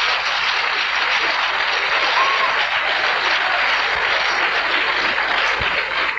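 Live audience applauding steadily after a comedian's punchline, with dense clapping from many people that begins to thin near the end.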